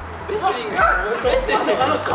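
Short, excited yelps and shouts from people straining and cheering, over a deep bass line.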